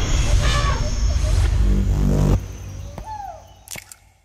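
Outro sound-effects sting: a loud rumbling whoosh that cuts off suddenly about two and a half seconds in, followed by a quieter tail with a falling tone and two sharp clicks, fading out at the end.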